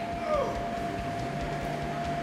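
Room noise with a steady thin electrical hum and a low drone, and one brief faint falling squeal about a quarter-second in.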